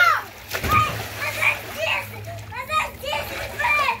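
Children's voices chattering, with a splash of water in a small inflatable pool about half a second in.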